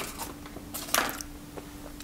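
A single brief rustle of a foil sweet wrapper being handled, about a second in, over a faint steady hum.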